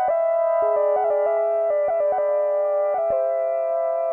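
Instrumental music on an electronic keyboard: a short melody of held notes stepping up and down over a lower sustained note that comes in about half a second in.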